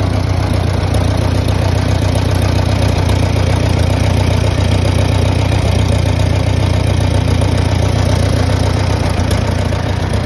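A McCormick Farmall B tractor's four-cylinder gasoline engine idling steadily, with no change in speed.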